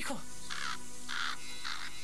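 A crow cawing three times, over a soft, sustained music underscore.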